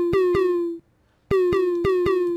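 LMMS Kicker synth kick drum, its frequency raised and distortion added, playing a looped pattern: each hit starts with a click and a short drop in pitch, then holds a buzzy tone. The hits come in quick runs, broken by a half-second gap about halfway through before the pattern starts again.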